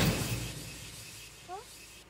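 The fading tail of a loud crash-like hit, dying away over about a second and a half, with a short rising chirp about one and a half seconds in.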